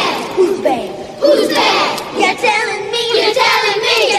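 A group of voices shouting together in short bursts, moving into held, sung notes about halfway through.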